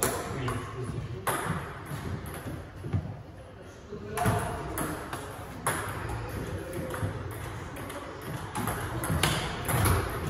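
Table tennis ball clicking off paddles and the table during rallies, with a lull about three seconds in before play picks up again.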